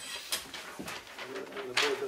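Large paper map sheet rustling and crackling as it is unfolded and handled, in a few short bursts with the loudest crackle near the end.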